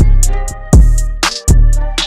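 Instrumental trap-style hip-hop beat: deep bass hits land about every three-quarters of a second, under crisp drum-machine percussion and a steady pitched melody.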